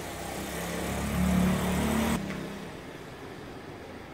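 A car's engine passing by, building up over the first second, loudest for about a second and then falling away quickly just after the midpoint.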